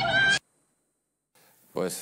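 High-pitched shouting and chanting by a group of young women, in a raw phone recording, cut off abruptly less than half a second in. About a second of dead silence follows, then a man starts talking.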